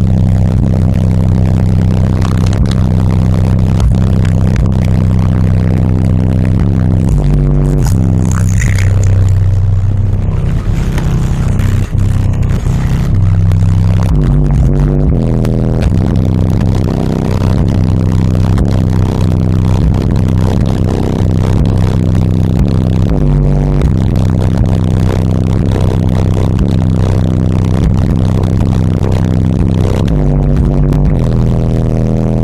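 Two SoundQubed HDC3 18-inch subwoofers playing bass-heavy rap music loud inside the vehicle, with deep bass notes that step through a repeating line about every second.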